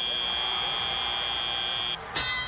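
FIRST Robotics Competition field buzzer marking the end of the autonomous period: one steady, high-pitched electronic tone that cuts off suddenly just before the end, over arena crowd noise.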